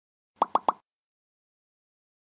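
Logo-animation sound effect: three short blips in quick succession, each rising slightly in pitch, a little under half a second in.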